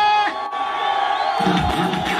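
Live music through a stage PA: a singer's held note ends early on, then the beat drops out for about a second while the crowd cheers, and the beat comes back in.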